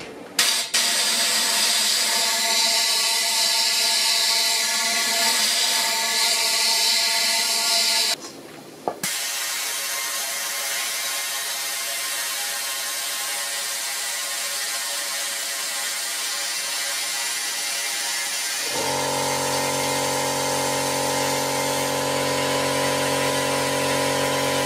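Compressed-air cavity-wax spray gun hissing steadily as it sprays Fluid Film into a scooter frame's tubes, with a short break about eight seconds in. A steady hum joins for the last few seconds.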